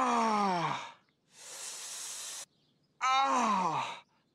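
A voice makes two long sounds that slide steeply down in pitch, one at the start and one about three seconds in, with a breathy exhale between them.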